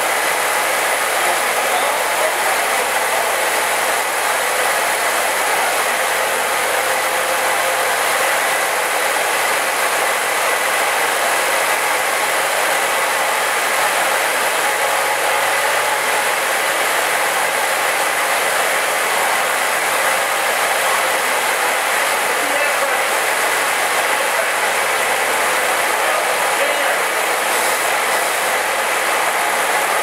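The 1916 Simplex Crane's six-cylinder engine running steadily at an even speed, warming up on its second run after almost 50 years out of service. Oil left in the cylinders for preservation is burning out of its cast-iron exhaust manifolds as it warms.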